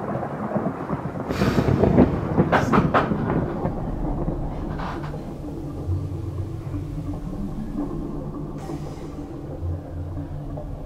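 Thunder rumbling, with a few loud cracks in the first three seconds, then easing into a low, steady drone.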